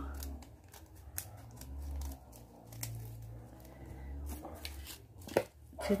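Small scissors snipping through folded gold laminated paper in a run of short, sharp cuts, with the foil sheet crinkling as it is handled. Two louder snips come near the end.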